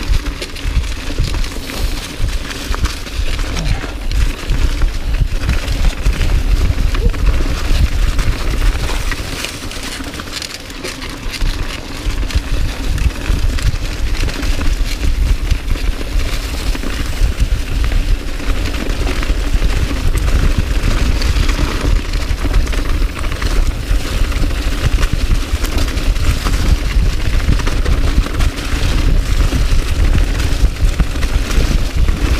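A mountain bike descending fast over a leaf-strewn dirt trail: tyres crunching through dry leaves, the frame and drivetrain rattling over bumps, and wind buffeting the camera microphone. The noise eases briefly about ten seconds in, then picks up again.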